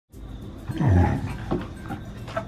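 Siberian husky giving one low growl that falls in pitch while play-fighting with another husky, followed by a short knock.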